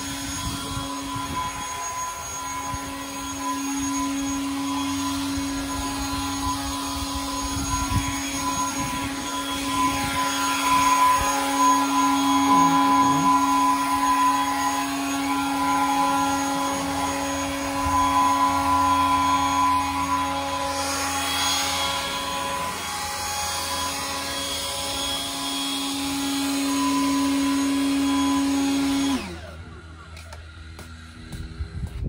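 Handheld cordless leaf blower running with a steady high whine, getting louder and quieter as it is swung around, then cutting off suddenly about a second before the end.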